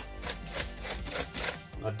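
A hand tool scraping along a carved groove in polystyrene foam in quick back-and-forth strokes, about four or five a second.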